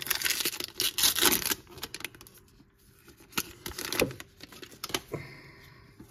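A foil trading-card pack wrapper being torn open and crinkled for about the first second and a half, then a few light clicks and rustles as the cards are handled.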